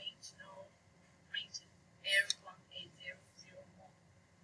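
A person speaking softly in short phrases, close to a whisper, over faint room hum.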